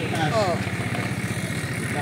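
A motor vehicle engine idling steadily close by, with people's voices over it.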